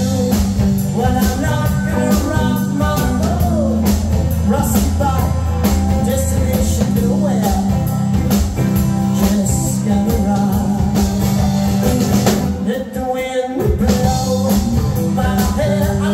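Live rock band playing: two electric guitars and a drum kit, with sung vocals. The low end drops out briefly about thirteen seconds in.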